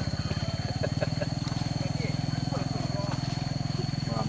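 Hunting dogs on leashes yelping and whining in short rising-and-falling cries, over a steady low pulsing rumble.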